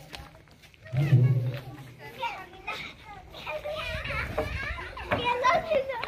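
Children chattering and calling out, mixed with other people's voices, with one louder, close voice about a second in.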